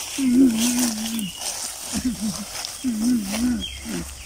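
A man's voice making drawn-out, wavering wordless groaning calls: one long call near the start, then shorter bending ones and another long one in the second half. Faint rustling in dry leaves and grass lies underneath.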